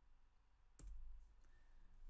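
A single computer mouse click a little before the middle, with a low thump, advancing the presentation slide; otherwise near silence.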